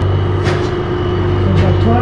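Steady low hum of a truck engine idling, with two short knocks about half a second and a second and a half in.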